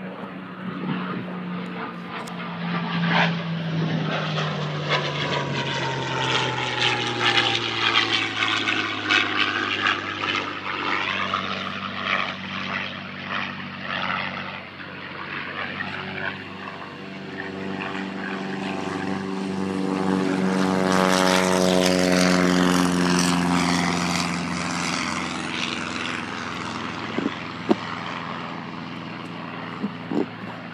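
Propeller-driven piston aircraft flying low past the airfield. Its engine drone swells twice and drops in pitch as it goes by. There are a couple of sharp clicks near the end.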